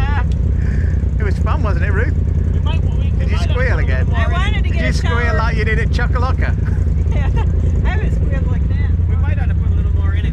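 A Polaris RZR side-by-side's engine idling steadily, with people talking over it.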